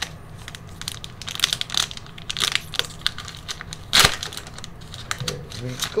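Foil trading-card booster-pack wrapper being torn open and crinkled by hand: an uneven run of sharp crackles and rips, the loudest about four seconds in.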